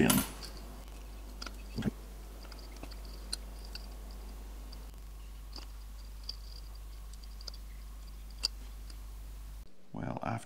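Small handling sounds from fitting the tiny plastic and metal parts and ribbon cable of a DJI Mavic Pro gimbal: a few faint, scattered clicks and a soft knock about two seconds in, over a steady low hum.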